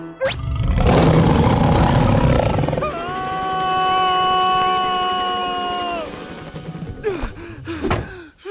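A cartoon dog's ferocious bark-roar blasting from a television at high volume for about three seconds, then a man's long, steady, high-pitched scream lasting about three seconds.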